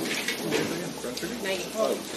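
Background talk: several people's indistinct voices, with a few light clicks.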